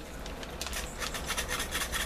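Hand-operated metal flour sifter pushing cornmeal through its mesh screen: the wire agitator scrapes and rasps against the screen in quick, repeated strokes, picking up about half a second in.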